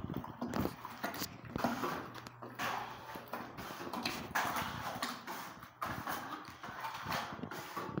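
A bare hand stirring plaster of Paris and water in a plastic bucket: repeated irregular wet slaps and sloshes.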